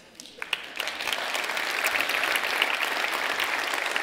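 Audience applauding, rising over the first second and then holding steady.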